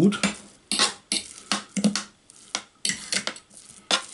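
Metal fork clicking and scraping against the plastic bowl of a food processor while stirring minced sausage meat, in irregular short strokes about three or four times a second at most.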